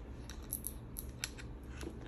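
A few sharp, irregular clicks: an African grey parrot's beak nibbling and tapping the hard plastic of a walkie-talkie.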